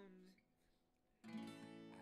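Cutaway acoustic guitar: a chord fades away, a short near-silent pause follows, and a new chord is strummed about a second and a quarter in.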